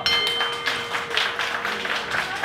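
Boxing ring bell ringing out to stop the fight, its tone fading within the first second, then applause from the ringside crowd.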